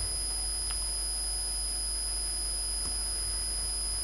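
Steady electrical background noise of the recording: a low hum with a high-pitched whine over it, and two faint clicks, about a second in and near the end.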